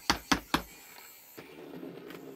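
Three quick knocks of a Wizzzer spinning top's plastic tip being worked against a wooden board to rev it up, about four a second. About one and a half seconds in, a faint steady hum begins as the top spins on its stand.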